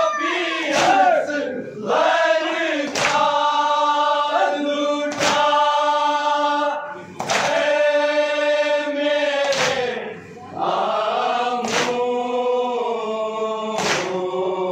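A group of men chanting a noha lament in unison, with a sharp collective chest-beating strike (matam) about every two seconds.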